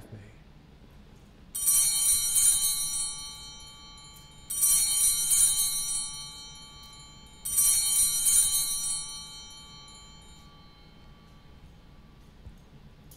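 A set of sanctus (altar) bells rung three times, about three seconds apart, each ring a bright jangle that fades away. It marks the elevation of the consecrated host.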